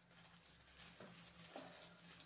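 Near silence: room tone, with two faint knocks about a second and a second and a half in.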